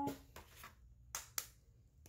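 An egg being tapped to crack its shell: a faint click, then two sharp clicks about a quarter second apart a little past the middle.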